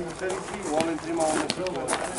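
Men talking and chatting, with a couple of short sharp clicks, one about a second and a half in.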